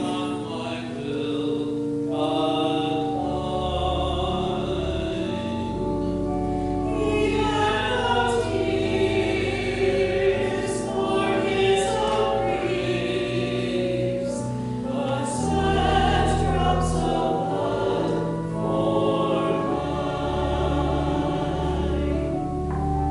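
Church choir singing in parts, with organ accompaniment holding long, low bass notes beneath the voices.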